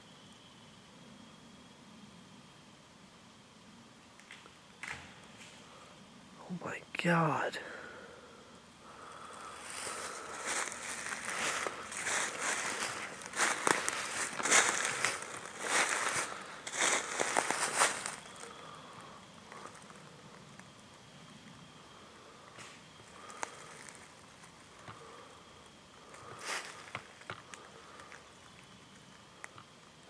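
Footsteps crunching through dry leaf litter in an irregular run for several seconds in the middle. They are preceded, about seven seconds in, by a single short sound that falls steeply in pitch. A faint steady high tone sits underneath throughout.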